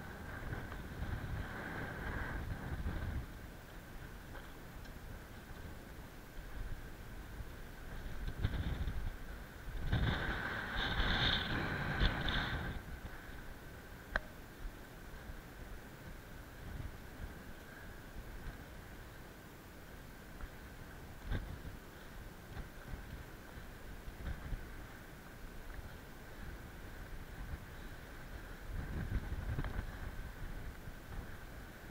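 Wind buffeting the microphone of a head-mounted camera in gusts, strongest about ten to twelve seconds in, over a faint steady high whine.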